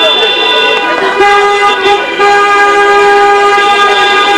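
Several car horns honking together in long, steady blasts, breaking off briefly about a second in and again about two seconds in: celebratory honking by a wedding car convoy.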